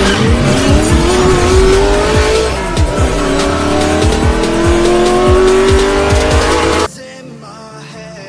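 Sound effect of a racing car engine accelerating through the gears over music with a steady beat. The engine pitch climbs, drops at a gear change about three seconds in and climbs again. Both cut off suddenly about seven seconds in, leaving quieter music.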